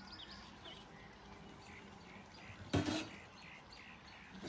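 Faint birds chirping; about three seconds in, one short clank as a large lidded metal cooking pot is picked up.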